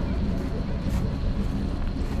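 Outdoor park ambience: a steady low rumble with faint distant voices.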